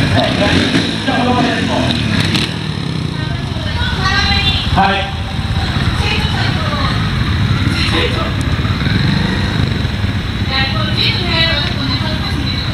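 Trials motorcycle engines running at low revs with occasional throttle blips, under voices.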